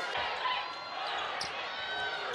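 A basketball bouncing on a hardwood court, a few separate bounces over the steady hum of an arena crowd.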